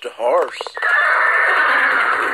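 A short wavering shout of 'boy!', then a loud, long horse whinny, heard through computer speakers.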